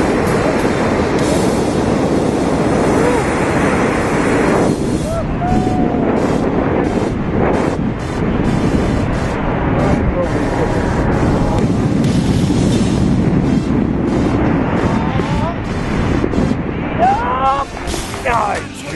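Wind rushing over a helmet-mounted action camera's microphone during parachute canopy flight: a loud, steady rush that thins out in the highs after about five seconds and turns uneven near the end as they land.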